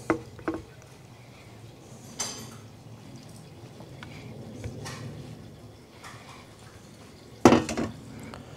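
Stainless steel mixing bowl knocking and clinking as sauced chicken wings are tipped out of it onto a wooden board. Near the end it is set down on a metal table with a loud clatter.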